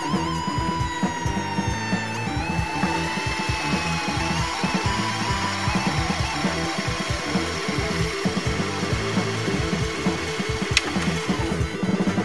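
Music with a steady beat over the mechanical whir of a Sony RDR-VXD655 VCR rewinding a VHS tape, with a single click near the end as the deck stops.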